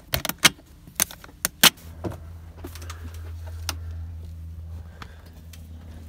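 Pelican cooler's lid and latches being shut: a run of sharp plastic clicks and snaps in the first two seconds. After that a steady low hum carries on.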